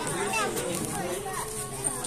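Many young children's voices chattering and calling out at once, as a crowd.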